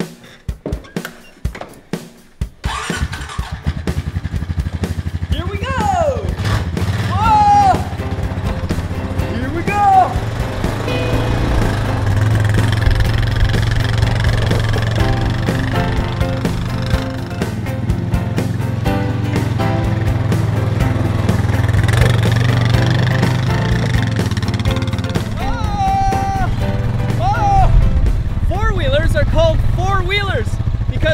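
Four-wheel ATV's engine starting about two seconds in, then running steadily as it is driven, under background music.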